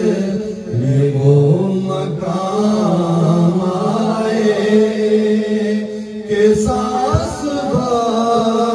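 A man singing a naat (Urdu devotional poem) into a microphone, holding long, gliding notes in a slow chant-like melody.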